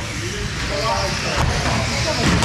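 Radio-controlled F1 stockcars racing around a carpeted oval track, with indistinct voices in the room.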